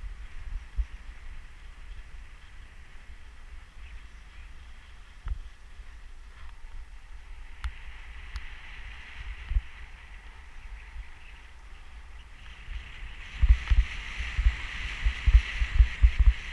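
Skis sliding and scraping over packed snow, a steady hiss, with wind buffeting the microphone in irregular low thumps. Both grow louder about thirteen seconds in.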